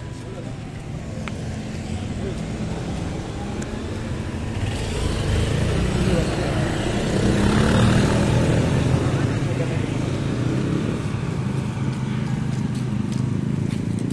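Motor traffic passing close on a busy street: small motorcycles and scooters and cars going by, loudest as vehicles pass about eight seconds in.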